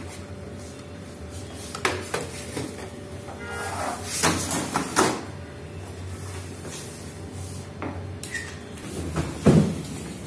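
Occasional knocks and clunks from handling things at close range, the loudest about nine and a half seconds in, over a steady low hum.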